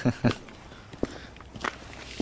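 Footsteps on asphalt pavement: two sharp steps, one about a second in and one a little over half a second later, after a brief bit of a man's voice at the start.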